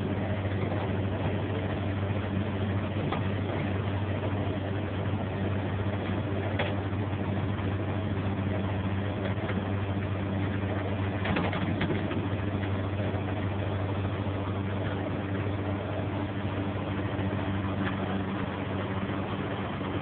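Flatbed tow truck's engine running at a steady idle, a level low drone, while the winch pulls a car up the bed, with a couple of faint brief creaks partway through.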